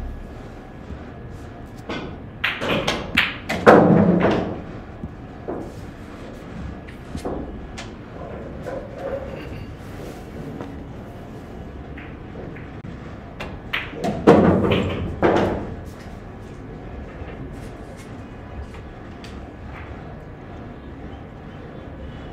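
Pool balls clacking and knocking together in two bursts about ten seconds apart, with steady hall noise between.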